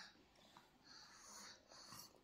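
Near silence: room tone with a faint, soft hiss in the second half.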